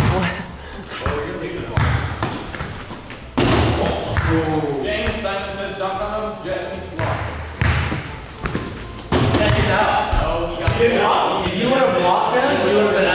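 A small ball bouncing and thudding several times during a mini-hoop shooting game, with young men shouting and laughing over it.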